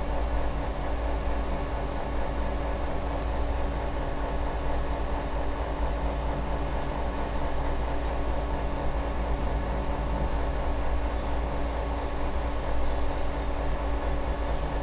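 Steady low hum with an even hiss and a few faint steady tones, the background noise of running workshop equipment, unchanging throughout.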